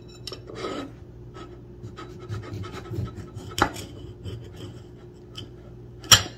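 Knife cutting a tamarillo in half on a plate: soft scraping and rubbing with small clicks, and one sharper click about three and a half seconds in.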